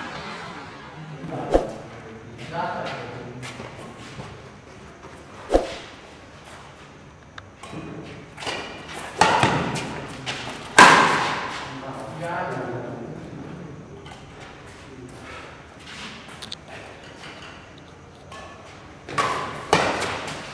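Badminton rackets striking a shuttlecock in a doubles rally: sharp, separate smacks a few seconds apart that echo in the hall. Players shout loudly during the middle of the rally.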